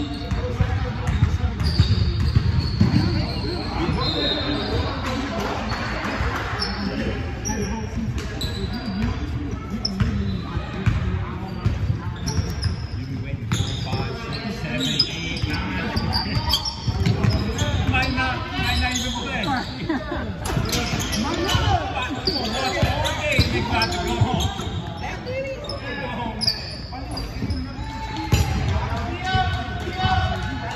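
A basketball being dribbled and bouncing on a hardwood gym floor during a game, with players' voices calling out, echoing in a large hall.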